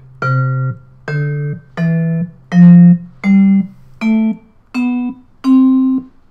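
Max/MSP software sampler playing a vibraphone sample from a MIDI keyboard: eight notes stepping upward through about an octave, each held about half a second and cut off sharply. Each note now starts from the beginning of the sample, so it has its full attack.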